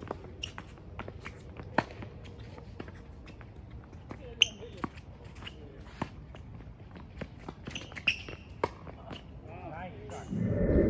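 Tennis rally: sharp racket strikes on a tennis ball and ball bounces on a hard court at irregular intervals, the loudest about four and a half seconds in, with players' footsteps between.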